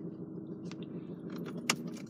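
Citroën C3 engine idling with a steady low hum inside the cabin, just after being started. A couple of light clicks come about a second apart.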